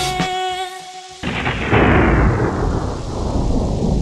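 The last held notes of a song die away, then about a second in a rumble of thunder breaks in suddenly and rolls on loudly, growing duller toward the end.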